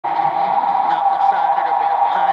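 Lo-fi, radio-like recording of faint voices over a steady high hum, cutting in suddenly at the start.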